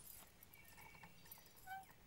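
Near silence in a lull between lines of dialogue, with a brief faint tone near the end.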